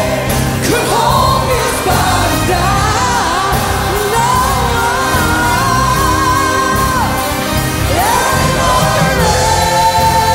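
Gospel worship song sung by a praise team and choir over a church band, with long held notes and sliding vocal runs.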